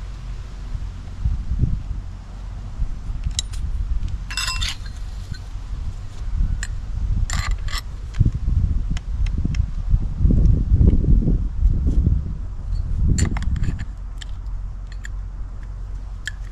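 A few light metallic clinks and clicks as a cutting wheel, its flange and an Allen key are handled and fitted onto a DeWalt cordless cut-off tool's arbor, with the spindle lock held; the tool is not running. A low rumble lies underneath throughout.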